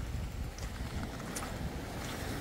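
Outdoor wind buffeting the microphone in a low, steady rumble, over the soft wash of small waves breaking on a sand-and-shingle beach.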